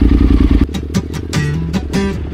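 Yamaha Super Ténéré parallel-twin motorcycle engine running under way, cut off abruptly about half a second in by background music with strummed acoustic guitar and a bass line.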